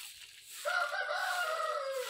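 A rooster crows once: a long call of about a second and a half that starts about half a second in and drops in pitch at the end.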